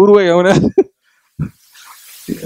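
A man's voice speaking: one drawn-out syllable that wavers in pitch, then a short sound and a pause of about half a second.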